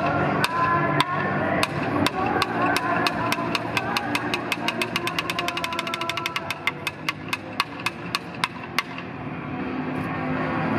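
Sharp wooden clicks of taiko drumsticks (bachi), about two a second at first, speeding into a fast run in the middle, then slowing and stopping about a second before the end. Yosakoi backing music plays underneath.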